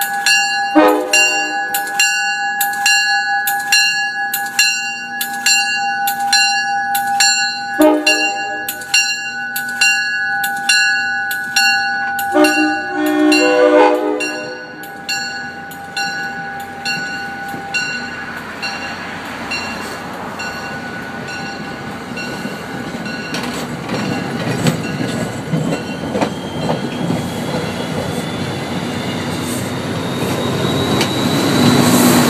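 NJ Transit commuter train passing: a bell dings about twice a second while the train horn sounds in blasts starting about a second in, at about eight seconds and at about twelve seconds. After the horn, the rush and rumble of the passenger coaches going past close by builds, with a faint rising whine near the end.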